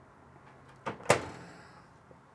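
Built-in microwave door swung shut, latching with a small click and then a sharper, louder click a moment later, about a second in.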